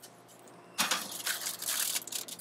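A foil-covered baking pan being slid into a portable countertop convection oven: a scraping, rustling noise of metal and aluminum foil that starts about a second in.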